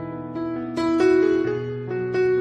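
Slow, relaxing solo piano music: single notes and chords struck a few at a time and left to ring over a held low bass note.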